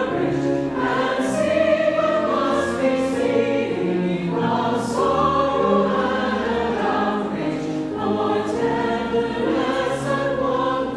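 Mixed choir of men and women singing a slow piece in long held chords.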